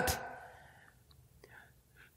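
A pause in a man's sermon: the end of his last word dies away in the room, then near silence with a faint short breath-like sound about a second and a half in.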